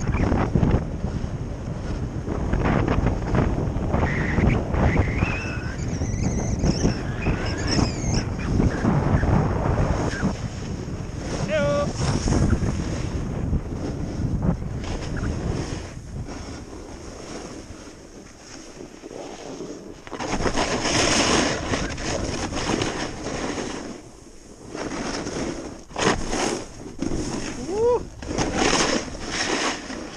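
Wind rushing over the microphone of a camera moving fast downhill, mixed with the scrape of skis or a board sliding on groomed snow. The noise is steady at first, eases off about halfway through, and returns in gusty bursts near the end.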